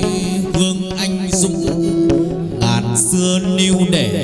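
Hát văn (chầu văn) ritual music: a moon lute (đàn nguyệt) playing a melody over quick, steady percussion clicks.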